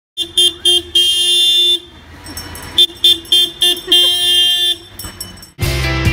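Refuse truck's horn sounding one steady note as a few short toots and then a long blast, twice over. Music starts just before the end.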